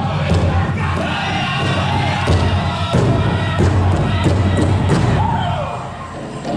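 Powwow drum group singing over a big drum struck in a steady beat, about one and a half strokes a second. The sound falls away near the end.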